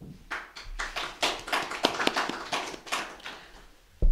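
Small audience applauding, starting just after a brief pause, and dying away near the end.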